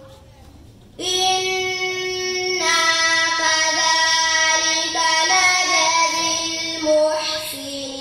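A girl reciting the Quran in the melodic, chanted style of tajwid recitation. After a short breath pause in the first second she resumes with long held notes that step up and down in pitch.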